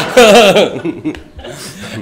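A man chuckling: a short, warbling laugh in the first half second that trails off quieter.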